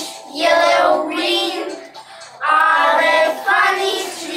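A small group of young children singing a song together in English, two sung lines with a short break between.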